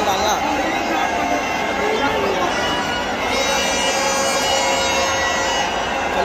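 Stadium crowd murmur with a voice over the public-address system at the start. About three seconds in, a steady reedy, horn-like tone joins and holds for about two seconds.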